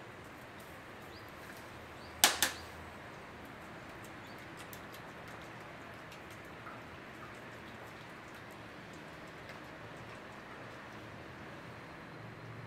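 A spatula stirring custard in a stainless steel bowl. The stirring is mostly faint under a steady hiss, with one sharp knock about two seconds in.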